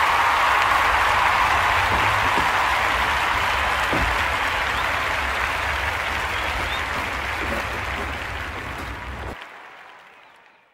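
Applause: a steady crowd of hands clapping that slowly dies down, then drops away sharply near the end.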